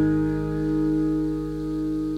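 Taylor 210 acoustic guitar's final chord ringing out, its sustained notes slowly dying away with no new strums.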